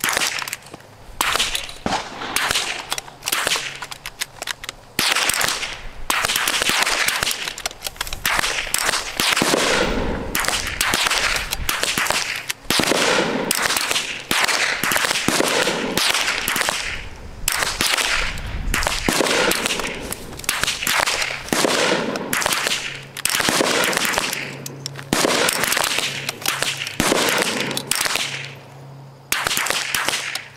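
Rifle fire from a firing line of several shooters: sharp shots in quick, irregular succession, several a second and often overlapping, each with a short echo.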